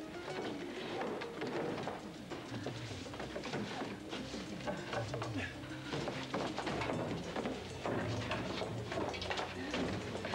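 Background music under repeated scrapes and knocks of cardboard boxes being shoved, lifted and stacked.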